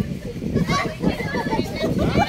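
A group of adults and children talking and calling out over one another.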